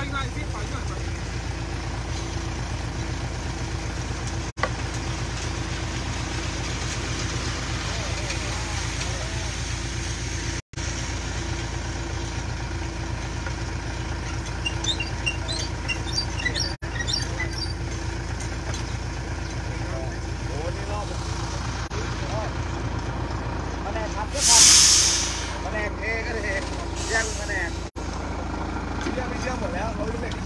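A concrete mixer truck's diesel engine running steadily, with one short, loud burst of air hiss about five seconds before the end.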